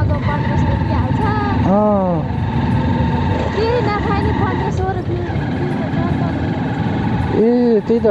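Motorcycle engine running steadily on the move, with a dense rumble of engine and road noise, and short snatches of voice over it.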